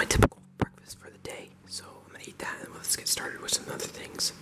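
A person whispering, with hissy sibilants and no voiced tone. A short, sharp knock comes right at the start.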